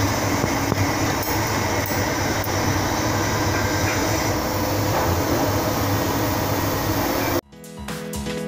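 Steady, dense workshop noise, which stops suddenly near the end as music comes in.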